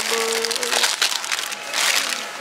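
Crinkling and rustling of foil snack-cracker bags handled on a shelf and dropped into a shopping cart, loudest near the end, with a short held musical note over the first second.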